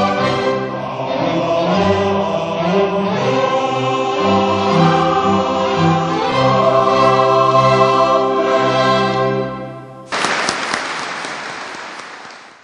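Choir and string orchestra performing a classical choral piece, the music dying away about ten seconds in. Applause breaks out suddenly right after and carries on to the end.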